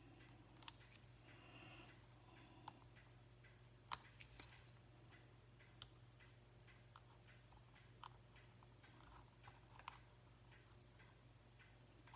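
Near silence over a faint steady hum, broken by scattered small clicks and ticks of metal tweezers and fingers handling paper and foam adhesive dimensionals on a craft mat, the sharpest about four seconds in.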